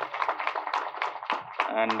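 Applause from a small group: many quick, irregular hand claps that die away about a second and a half in.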